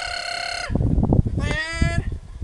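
A dog giving two long, high-pitched whining cries, the first held steady, the second near the end sliding down in pitch.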